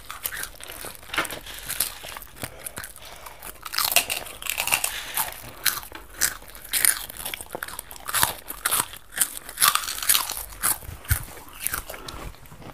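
Close-up crunching and chewing of dry, crisp snacks (puffed sweet wheat, fried puffed snacks and cereal) by several eaters: irregular sharp crunches, growing denser and louder from about four seconds in.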